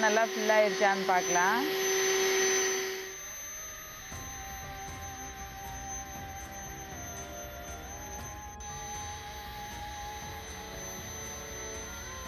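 Handheld electric air pump running with a steady whine as it inflates a vinyl pool, with a voice over it at first. It stops about three seconds in, leaving a quieter low hum and a few sustained tones like soft music.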